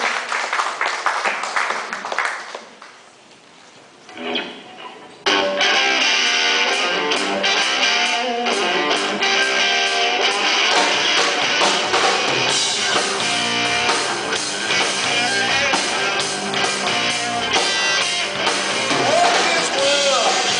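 Audience clapping, dying away over the first couple of seconds; after a short lull a blues-rock band comes in all at once about five seconds in, with electric guitar, electric bass and drum kit playing the opening of the song.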